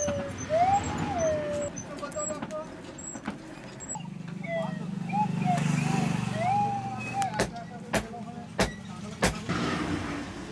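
Four sharp knocks about half a second apart near the end, from a blacksmith hammering a wooden handle onto a forged iron tool, after a low steady hum through the middle.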